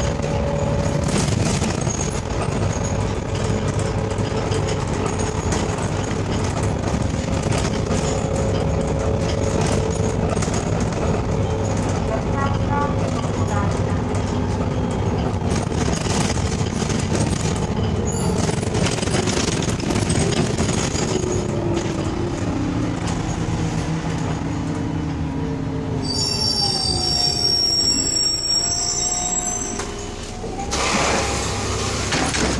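Interior of an Irisbus Citelis CNG city bus under way: steady engine and road rumble with a drivetrain whine that falls in pitch from about twenty seconds in as the bus slows. Near the end comes a high brake squeal as it comes to a stop.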